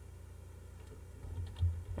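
Computer keyboard typing begins a little past the middle: a few faint keystrokes over a low steady hum.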